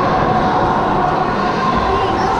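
Steady ice-rink ambience: an even rumbling hum with faint steady tones and no distinct knocks or voices standing out.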